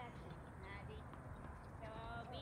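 Faint, distant voices in brief snatches over steady outdoor background noise, with no clear racket or ball strike.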